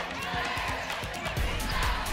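Faint background music over the low noise of a basketball gym, with soft thumps of a basketball being dribbled on the hardwood floor.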